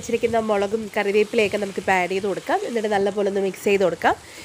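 Chicken pieces sizzling as they fry in a non-stick kadai, stirred with a wooden spatula, under a woman talking throughout.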